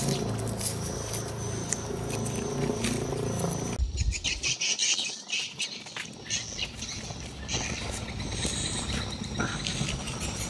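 Outdoor ambience with birds chirping and a steady high insect buzz. About four seconds in the sound changes abruptly, and scattered scuffs and knocks follow as a barefoot man climbs a tree trunk.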